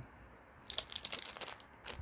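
Clear plastic bag packaging crinkling as it is handled by hand, a crackly run lasting about a second in the middle.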